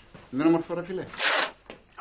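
A strip of tan packing tape pulled off the roll with a short rasp of about a third of a second, after a few spoken words.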